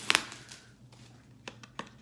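Bubble-wrap packaging crinkling as a wrapped eyeshadow palette is unwrapped by hand: a sharp crackle at the start, then a few faint clicks and rustles.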